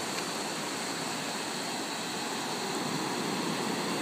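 Ocean surf washing onto a shallow beach: a steady, even rush of breaking waves.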